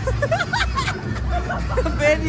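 Several voices talking and laughing over one another, with music playing underneath as a steady low band.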